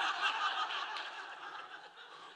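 A large audience laughing together at a joke, the laughter gradually dying away toward the end.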